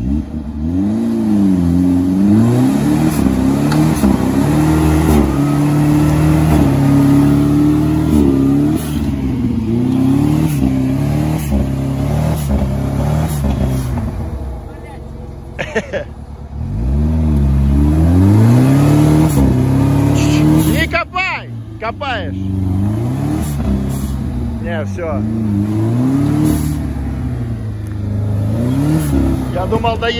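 Modified UAZ 4x4's engine revving hard under load as it crawls through deep mud, its pitch rising and falling every second or two. The revs drop off about halfway, then climb again.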